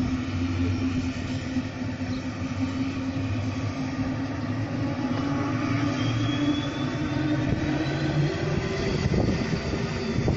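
Aircraft engines running steadily, a continuous low hum over a noisy roar, with a faint whine rising slowly from about six seconds in.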